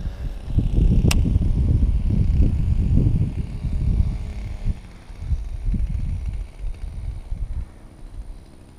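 Wind buffeting a body-worn camera microphone, a loud uneven low rumble that eases off after about five seconds, with one sharp click about a second in.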